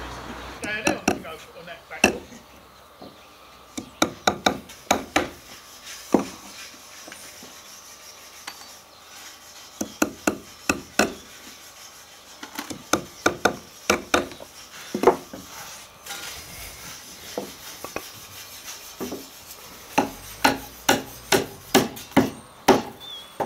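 Claw hammer driving nails through timber herringbone struts into the joists, in several runs of quick strikes separated by pauses.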